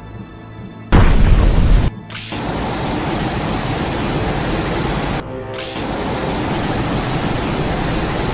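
Sound effect of a falling object from space: a sudden loud boom about a second in, followed by loud, sustained rushing noise that breaks off briefly about five seconds in and then resumes, over quiet music.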